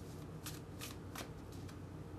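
A tarot deck being shuffled by hand, cards slid and flicked between the palms, with three distinct soft card strokes about half a second apart and a few fainter ones after them.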